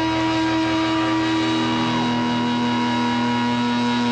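Live hard rock band holding a loud, sustained distorted electric guitar chord that rings on steadily, moving to a lower chord right at the end.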